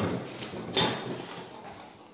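A foot pressing the brake lever on a workbench's caster wheel to lock it, giving a sharp click a little under a second in.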